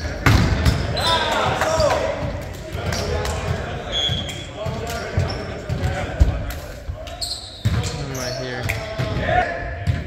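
A volleyball being struck and hitting the hardwood floor of a large gym, with sharp smacks right at the start and a couple more later on, amid players shouting and calling during the rally.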